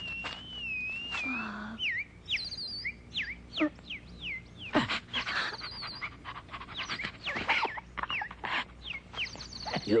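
Cartoon sound effects: a wavering whistle, then a run of quick whistled glides and chirps mixed with sharp knocks and short vocal cries.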